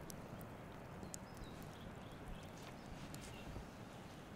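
Wood campfire crackling, with sparse sharp pops and snaps at irregular intervals over a steady low background rumble, and a few faint short bird chirps.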